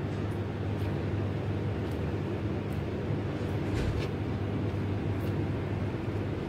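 A steady low mechanical hum in the background, with a few faint, soft taps.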